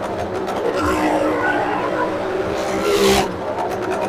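Motorcycle engine running hard as it circles the wooden wall of a well-of-death drum, with a loud swell about three seconds in as it passes close.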